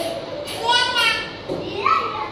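A high-pitched voice calling out for about half a second, with a second short call near the end.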